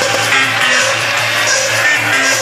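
Electronic dance music from a DJ set, played loud over a club sound system, with a steady bass line running under it.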